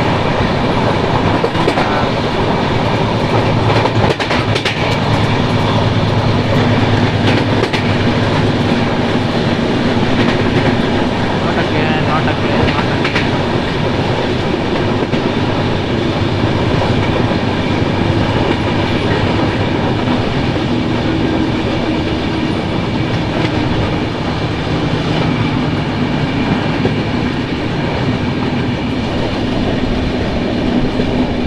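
Sealdah Duronto Express passenger coach running along the track, heard from its open doorway: a steady rumble of wheels on the rails with the clickety-clack of rail joints.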